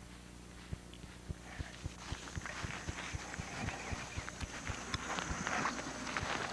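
Footsteps on grass, soft low thumps at a steady pace of about three a second. From about two seconds in, a growing rustling hiss with small clicks joins them.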